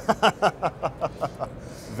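A man laughing: a run of short, evenly spaced 'ha' pulses, about five a second, trailing off about a second and a half in.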